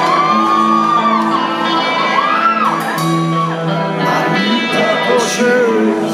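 Live rock band playing the opening of a song in a large hall, with held notes and audience members shouting and whooping over the music.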